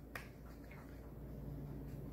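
A couple of faint taps of a felt-tip marker on paper, over a low steady hum.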